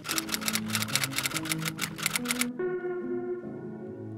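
Quick typewriter-style key clicks, a typing sound effect for on-screen text, that stop about two and a half seconds in, over background music with held notes.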